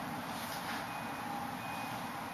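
Faint high-pitched beeps, short and evenly repeated at one fixed pitch, over a steady low room hiss.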